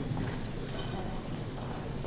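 Shoe heels clicking on a marble floor as a small group walks slowly, over a low murmur of voices.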